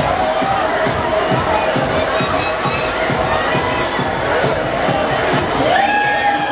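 Funfair din: a crowd's shouts and screams over loud ride music with a steady beat.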